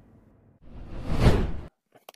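Whoosh sound effect for a video slide transition: a rush of noise that starts about half a second in, swells, and cuts off suddenly.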